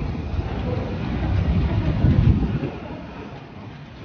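City street noise: a low traffic rumble from passing motorcycles, swelling about two seconds in and then fading.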